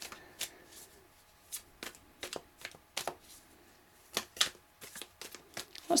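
A deck of tarot cards being shuffled by hand, giving a soft, irregular run of short card clicks and slaps.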